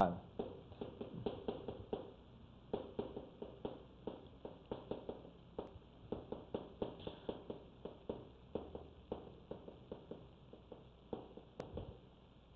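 Chalk writing on a blackboard: a quick, irregular series of short taps and scratches, a few per second, as characters are written stroke by stroke.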